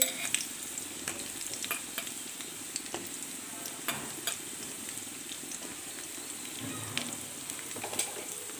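Sliced onions and garlic sizzling steadily in hot oil in a wok, with scattered small pops and crackles. Slit green chillies go into the oil partway through.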